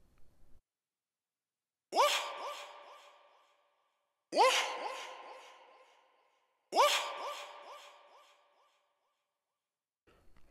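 A short sample with a rising pitch, played three times about two and a half seconds apart, each hit trailed by delay echoes that fade out over about two seconds: the feedback repeats of a Waves H-Delay plugin with its wet mix and feedback turned up.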